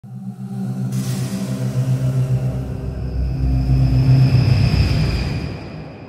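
Logo-intro music sting: a deep sustained chord with a rumbling low end and an airy whoosh that enters about a second in, swells to a peak, then fades out near the end.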